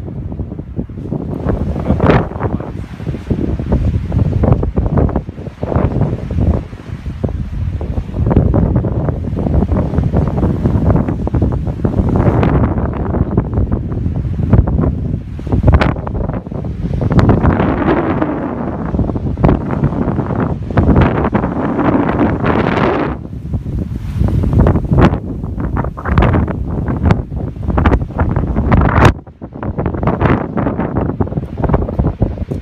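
Loud wind noise buffeting the microphone in uneven gusts, with frequent sharp pops where the gusts hit it.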